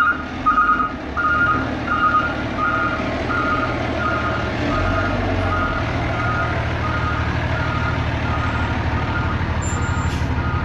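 Fire rescue truck's reverse alarm beeping steadily, about three beeps every two seconds, while the truck backs up, over its diesel engine running. The beeps grow fainter in the second half as the engine rumble grows louder.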